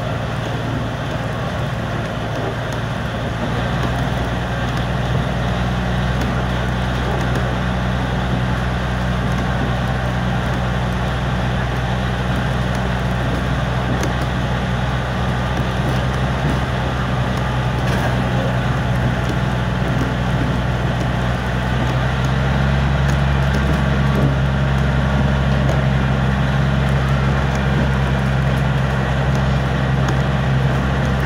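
Heritage train running, heard from an open carriage window: a steady low drone from the locomotive over wheel and track rumble, growing a little louder about two-thirds of the way through.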